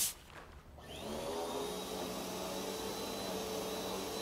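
A spray bottle spritzes once, then about a second later an upright vacuum cleaner starts up with a rising whine and runs steadily.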